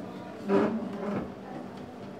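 A chair scraping across the floor as someone pushes back from a table and stands up. It is one loud scrape starting about half a second in and lasting under a second.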